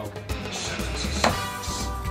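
A steel-tip dart striking a Winmau Blade 6 bristle dartboard once, about a second in, a sharp hit that is the loudest sound here, over background music with a steady bass beat.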